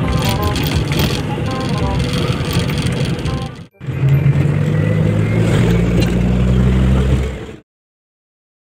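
Bus running on the road, heard from inside: engine and road noise with some voices, then a steady low engine drone, cutting off abruptly near the end.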